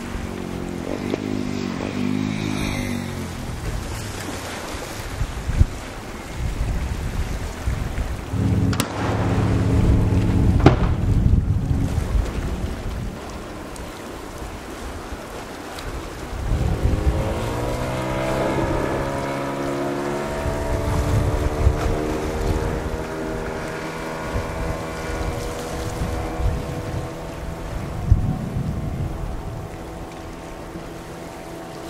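Wind on the microphone over open water, with a boat engine's pitched drone heard in stretches. Its pitch rises a little after halfway, then holds steady to the end.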